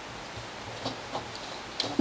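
Faint, scattered small ticks of origami paper being pinched and creased between the fingers, over a steady low hiss.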